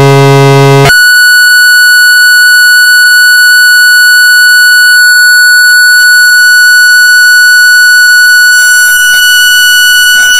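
Korg synthesizer drone, very loud: a low buzzing tone rich in overtones switches abruptly about a second in to a steady high-pitched tone that holds, with a faint hiss creeping in beneath it near the end.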